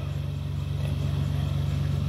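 A steady low mechanical hum, like an engine running, with no change through the pause.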